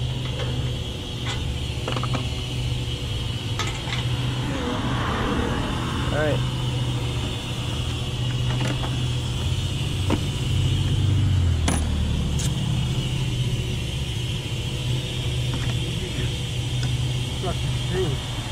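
A vehicle engine idling with a steady low hum, with scattered sharp metallic clicks from sockets and hand tools being handled at a truck wheel hub.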